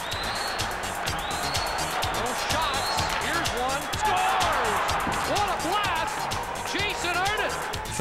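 A hockey arena crowd cheering and yelling after a goal, heard over a background music track with a steady beat. The cheering swells about halfway through.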